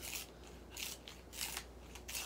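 A wooden pencil being sharpened in a small handheld sharpener, with short rasping scrapes about every two-thirds of a second as the pencil is twisted.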